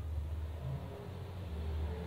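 A low, steady rumble with a faint hiss above it, swelling and easing slightly.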